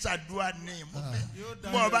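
A man's voice speaking through a microphone and PA, with a steady low tone underneath.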